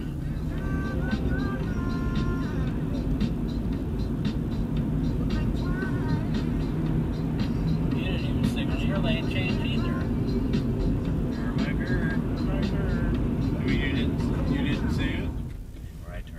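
Steady road and engine noise inside a moving car, with music from the car's radio playing underneath. The rumble drops away suddenly near the end.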